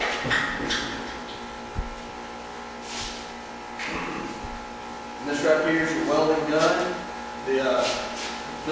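A man's voice speaking indistinctly in the second half, with a few short knocks of handling before it and a steady hum underneath.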